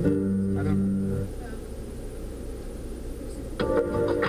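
Karaoke backing music from the van's system: held piano or keyboard chords that stop about a second in. A low cabin rumble is left until another track starts near the end.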